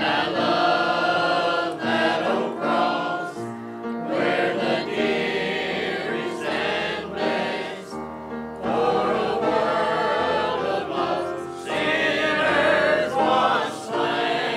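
Mixed choir of men's and women's voices singing a hymn together, in phrases with brief pauses between them.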